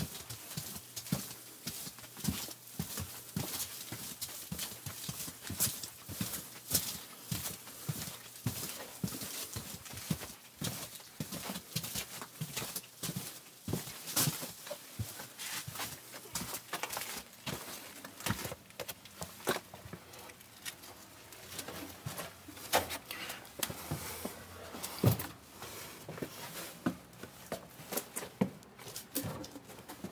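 Footsteps knocking on wooden walkway boards and floorboards, an irregular run of sharp knocks and clicks with a few louder thuds later on.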